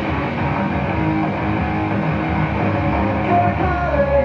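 Loud rock music with electric guitar plays steadily.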